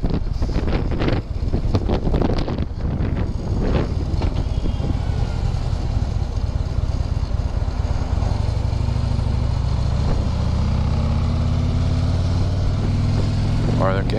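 Harley-Davidson touring motorcycle's V-twin engine running at low town speed. It is uneven for the first few seconds, then steadier and fuller from about halfway, its note rising slowly as the bike picks up speed.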